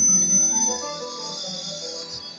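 Church worship band music: sustained keyboard chords with a high shimmering wash, swelling at the start and fading away.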